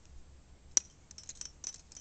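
Metal climbing carabiners clinking and clicking: one sharp click about three-quarters of a second in, then a quick run of lighter clicks.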